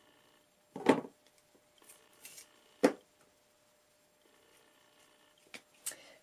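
Two short, sharp knocks about two seconds apart, with a few fainter clicks, as craft tools are set down and handled on the work surface.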